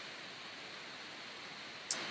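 Steady, faint hiss of microphone and room background noise, with a brief sound near the end.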